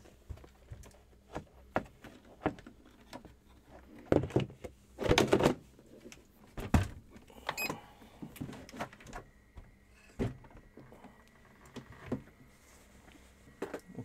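Plastic door of a reptile egg incubator being handled and closed: scattered knocks and clicks, a louder rattle about four seconds in and a sharp thunk a little before seven seconds. A faint steady high tone sounds through the second half.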